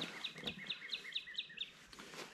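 A bird calling: a quick run of about nine short, falling chirps, about six a second, that stops after a second and a half or so.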